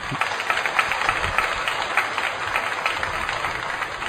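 A church congregation applauding: many hands clapping in a dense, steady patter that eases off slightly toward the end.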